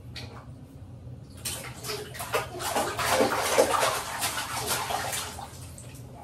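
Water splashing and sloshing in a baby bathtub during a bath. It picks up about a second and a half in, with quick irregular splashes, and dies down near the end.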